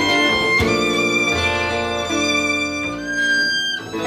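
Violin playing held melody notes over acoustic guitar and a low upright bass note, in a live acoustic instrumental passage. The loudness dips briefly near the end as one phrase gives way to the next.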